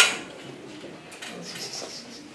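A single sharp hit at the very start that dies away quickly, then low room noise with faint scattered sounds.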